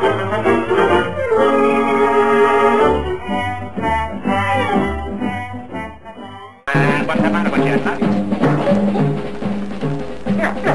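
Title music that fades out about six seconds in, then a sudden cut to a different piece of music with a repeating bass line.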